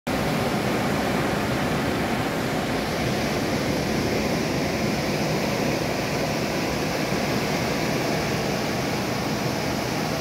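Ocean surf breaking on a sandy beach: a steady, even wash of noise without pause.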